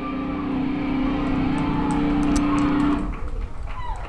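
A live band's single held note ringing out through the amplifiers, steady and loud, then cut off about three seconds in, leaving a few clicks and stage noise.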